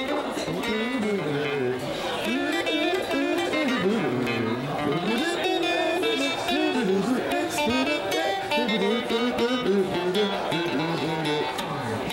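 Electric guitar playing a bluesy single-note melodic line with bent notes, running on without a break.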